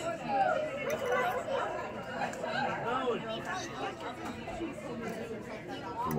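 Background chatter of many diners' voices in a restaurant dining room, overlapping and steady.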